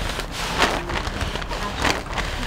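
Brown paper bag crinkling as a woman breathes hard in and out of it, with a few sharp rustles of the paper.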